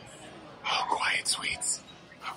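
A woman whispering a few words for about a second, after a brief lull of room noise.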